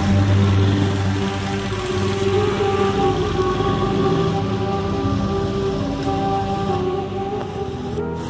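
Background music with sustained notes that change pitch every second or two, over the running engine of a small motorcycle.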